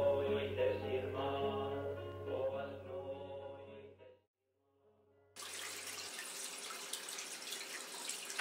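A Galician folk song sung by a group, from an old recording with a low hum beneath, fades out about four seconds in. After about a second of silence, steady running water starts and continues.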